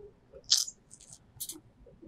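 A pause in a man's speech: mostly quiet, with two short, faint hissing breaths, one about half a second in and one about a second and a half in.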